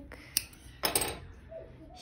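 Small scissors handled at the yarn: a sharp metallic click, then about half a second later a brief, louder snip.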